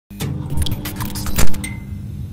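Logo-intro sound effects: a steady low hum under a quick run of jangling, clicking hits, with one loud impact about one and a half seconds in.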